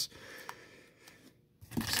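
Faint handling rustle of a plastic card holder in the hands, with one small click about half a second in, then near silence.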